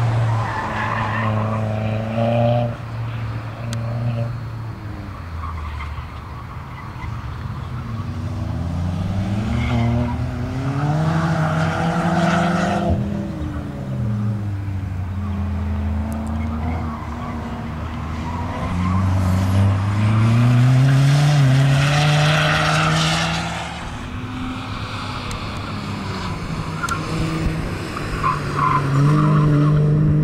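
Mk4 Volkswagen Golf driven hard through an autocross cone course, its engine revving up and falling back again and again with the throttle. Tyres squeal in the hard corners, loudest twice, once midway and again a little later.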